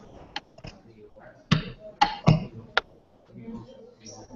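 Several short, sharp knocks at uneven intervals, the loudest between about one and a half and three seconds in, with faint voices underneath.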